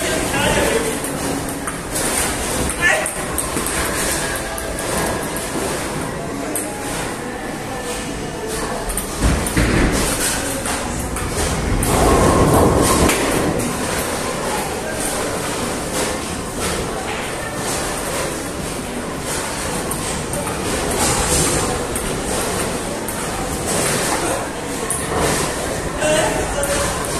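Table tennis ball clicking off the paddles and the table in repeated rallies, over the noise of a busy hall with voices.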